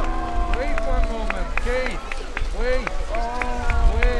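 Crowd chatter: many overlapping voices talking and calling out at once, with a few sharp clicks in the first half and a low rumble underneath.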